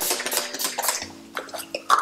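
Light clicks and rustling as hair is handled and a hair grip is worked out to let down the next section, over soft background music holding steady tones.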